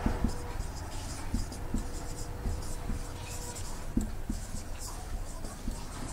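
Marker pen writing on a whiteboard: faint, scratchy squeaks of pen strokes with light taps as words are written out in a steady run.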